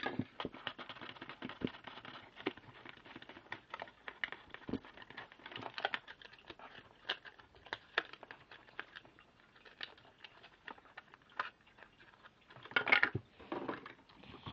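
Thin clear plastic container being handled by hand: scattered light clicks, taps and crinkles, with a louder cluster near the end.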